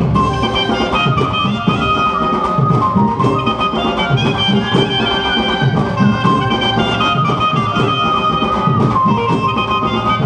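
Live stage band playing an instrumental passage: a sustained, wind-like melody line over a steady drum beat.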